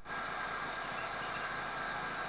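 Fiat Mobi engine idling at operating temperature with its electric radiator cooling fan running: a steady whir with a faint steady whine.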